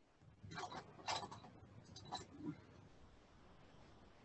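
Faint, soft swishes of a flat watercolour brush scrubbing raw umber paint in a palette well, a few short strokes in the first half, then near silence.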